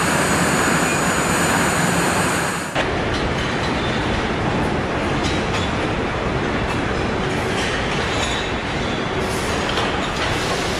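Steady rumble and hiss of truck assembly-line machinery and conveyors, with faint scattered clanks. The sound changes abruptly about three seconds in.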